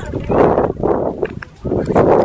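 Indistinct voices talking, with no words made out.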